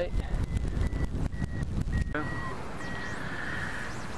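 Airflow rushing and buffeting over the wing-mounted microphone of a hang glider in flight, gustier in the first two seconds and then steadier. Through it runs a high, repeated beeping, the kind a hang-gliding variometer gives when it signals lift.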